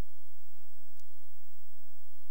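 A steady low hum, with one faint click about a second in.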